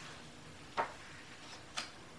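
Page of a hardcover picture book being turned and pressed flat, with two faint short paper taps about a second apart.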